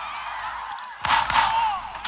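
Soundtrack of a TV action scene: faint voices at first, then a burst of noise with a shout about a second in.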